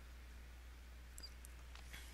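Near silence: room tone with a steady low hum and a couple of faint short clicks, about a second in and near the end.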